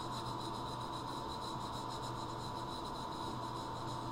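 Pencil scratching on paper in quick back-and-forth strokes, shading in curved lines.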